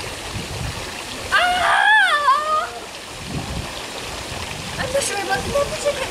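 Steady rush of running water, with a high, wavering cry from a person lowering herself into freezing pool water, its pitch going up and down for about a second and a half starting about a second in.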